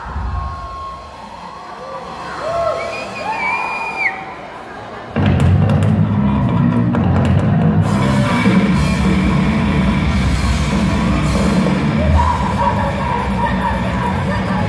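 Voices of people on stage and in the crowd shouting and cheering. About five seconds in, a live metal band starts playing at full volume, with drums and guitars, and keeps going.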